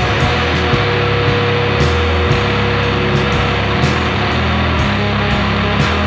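Loud, distorted rock music: a dense wall of guitar and bass with drum hits about twice a second.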